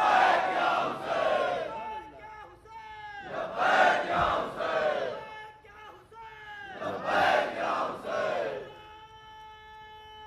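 A large crowd shouting in unison in three loud rounds, each a couple of seconds long, in response to a speech. Near the end the shouting stops and a steady tone with overtones holds.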